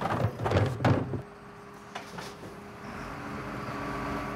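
Garbage truck's rear loader at work: a run of knocks and clatter in the first second, then a steady mechanical hum from the truck that grows a little louder near the end.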